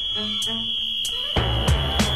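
A whistle blown in one long, steady, high blast, over music whose beat comes in past the middle.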